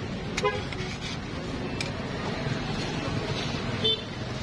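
Street noise with two short horn toots, one about half a second in and one just before the end.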